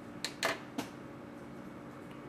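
Three short clicks, the second the loudest, within the first second, over a steady low electrical hum.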